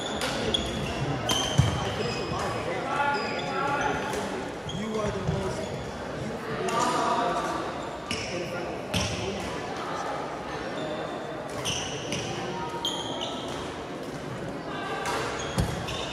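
Badminton play on a gym court: sharp racket hits on the shuttlecock and short, high sneaker squeaks on the court floor, echoing in the large hall, with people talking indistinctly in the background. The loudest hit comes about a second and a half in.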